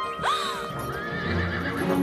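Carriage horse whinnying: a sharp cry that leaps up and falls away, then a longer wavering neigh, over background music.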